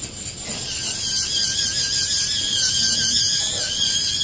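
Dental lab micromotor handpiece whining as its bur grinds down the border of an acrylic lower special tray, the pitch wavering slightly under load. The whine sets in about half a second in and holds steady.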